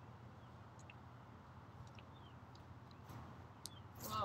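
Near silence: faint outdoor background with a few brief, faint high bird chirps scattered through it.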